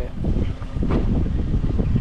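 Wind buffeting the microphone: a loud, continuous low rumble.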